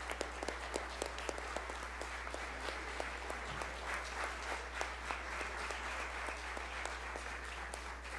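Audience applauding, a steady patter of many hands clapping that dies away near the end, over a constant low electrical hum.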